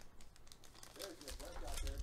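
Faint clicking and crinkling of trading cards and pack wrappers being handled, with a faint voice in the background about a second in.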